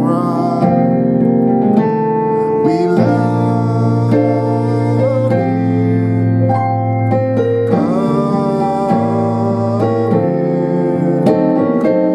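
Piano playing a slow gospel song in full two-handed chords, each rich chord held and ringing before moving to the next, in the advanced, full arrangement.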